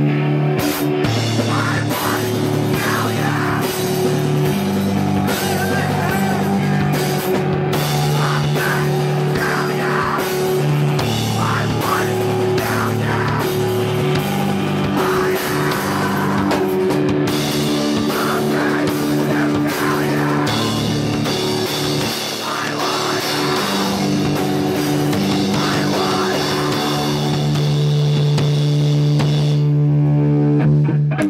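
A live emo/math-rock band playing loud: distorted electric guitars through Marshall amplifiers over a drum kit, ending on a long held, ringing chord.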